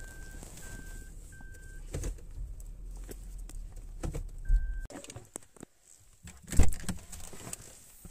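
A car's electronic warning beep, one steady pitch, sounds several times in short pulses over the first two seconds and once more at about four and a half seconds, over low rumble from the car running. The rumble drops away at about five seconds, and knocks and rustles from handling the phone follow, the loudest a sharp knock at about six and a half seconds.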